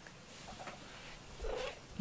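Domestic cat purring softly while being stroked, with one brief louder sound about one and a half seconds in.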